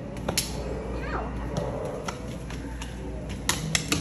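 A plastic digging scoop working through the loose granular fill of a fossil dig pit: scattered light scrapes and clicks, bunched together near the end, over a steady room hum.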